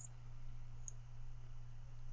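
A single faint computer mouse click about a second in, the button released to drop dragged data, over a steady low hum.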